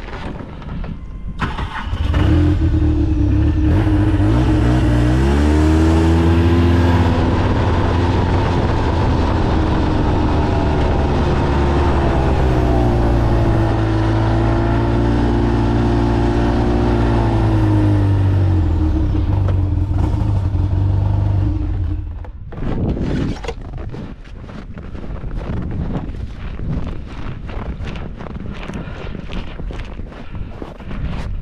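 Taiga Bars 850 snowmobile engine starting about two seconds in, quickly revving up, then running for about twenty seconds with its pitch slowly rising and falling before it is shut off. After that, wind gusts on the microphone.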